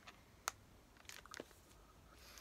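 Near silence with a few faint, short clicks: one sharper click about half a second in, then two or three fainter ones a little after a second.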